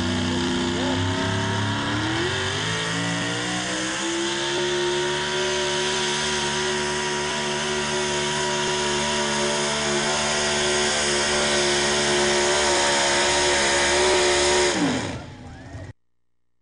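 A pickup truck's engine pulling a weight-transfer sled at a truck pull. It climbs in revs about two seconds in and holds steady at high revs under load, then drops off sharply near the end as the driver lets off.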